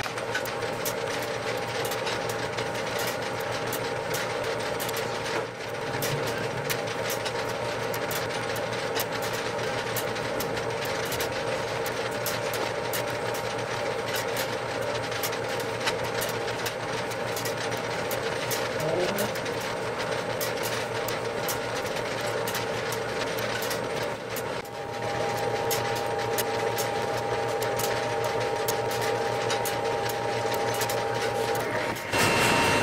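Equipment-room noise of an electromechanical telephone exchange: a steady hum with a few held tones under fast, irregular clicking that runs on throughout, dipping briefly twice.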